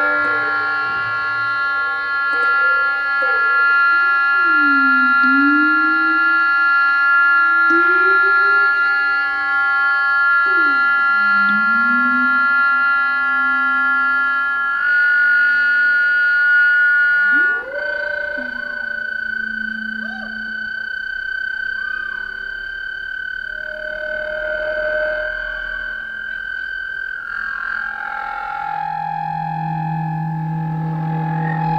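Experimental electronic music: a cluster of long held synthesizer tones over lower pitches that swoop down and back up every few seconds. About halfway through the sound drops to a quieter single held tone with fewer swoops, and new held tones enter near the end.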